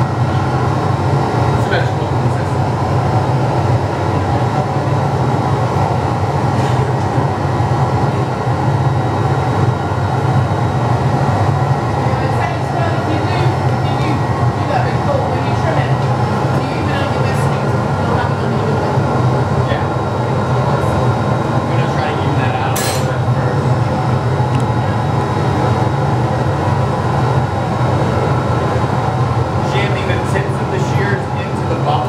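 Steady, loud roar of a hot-glass studio's gas-fired furnace and glory hole burners, running without a break. A few sharp metal clinks of hand tools on the steel blowpipe cut through it, the clearest about two-thirds of the way in.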